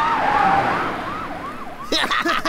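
Several vehicle sirens in a fast rising-and-falling yelp, about three sweeps a second, fading toward the end.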